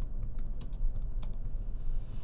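Typing on a computer keyboard: a run of quick, irregular key clicks over a steady low hum.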